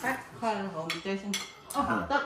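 A fork and spoon clinking against a plate and bowl while eating, with a few sharp clinks. A person's voice is talking at the same time, loudest in the first second and a half.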